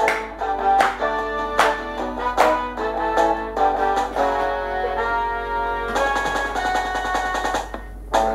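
Instrumental break of a soul backing track: a horn section playing over a drum beat, the horns moving into long held chords in the second half.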